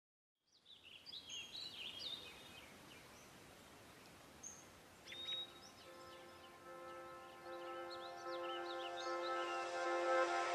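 Faint bird chirps over a steady outdoor hiss. A soft held music chord fades in about halfway through and swells toward the end.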